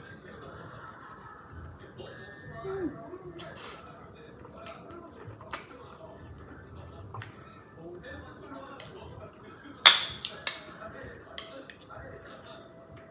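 Close-up eating sounds: ramen noodles being slurped and chewed, with scattered clicks of chopsticks against the bowl, the loudest a sharp clink about ten seconds in.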